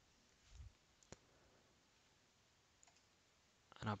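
Near silence with a single sharp click about a second in, a computer click as the selected code is copied. A faint low thump comes just before it.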